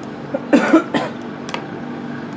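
A person coughs once, about half a second in, followed by a couple of short sharp clicks, over a steady low hum.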